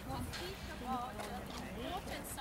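Indistinct voices of several people talking in an outdoor group, with a few short clicks or knocks among them.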